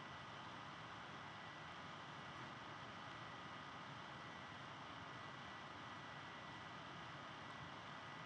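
Faint steady room tone: an even hiss with a thin, steady high-pitched hum running through it and no distinct sounds.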